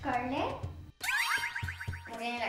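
Cartoon-style comedy sound effects over background music: a springy boing that swoops down in pitch and back up, then, after a brief cut to silence, a quick run of rising whistle-like sweeps.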